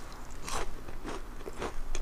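Macaron being bitten and chewed close to the microphone, its crisp shell crunching in a series of short crackles.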